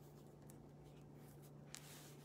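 Near silence: room tone with a faint steady low hum and one faint tick near the end.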